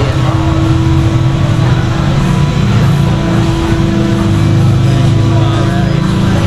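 Steady low rumble of street traffic engines, mixed with background music.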